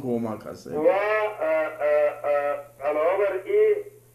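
A man speaking, with a faint steady low hum underneath.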